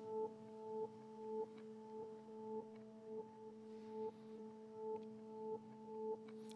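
Quiet drone of a few steady pure tones, swelling and cutting off in a regular pulse about every 0.6 seconds.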